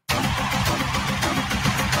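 An engine running: a dense, steady noise with a fast, uneven crackle, starting abruptly after a split-second dropout.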